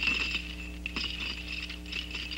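Iron chain clanking and rattling in short, irregular clinks as a chained man strains against it, over a sustained low musical drone.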